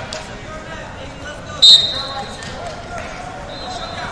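Wrestling referee's whistle, one short, sharp blast a little under halfway through, restarting the bout from neutral. A fainter whistle tone at the same pitch sounds near the end, over the murmur of the gym.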